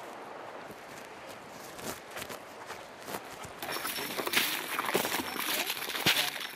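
Scattered footsteps on rocks at a shallow stream, a few sharp clicks over a low hiss. A little past the middle, a louder steady rushing noise takes over.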